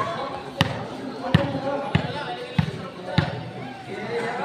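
A ball bouncing on a concrete court: five sharp knocks a little over half a second apart, over the murmur of spectators' voices.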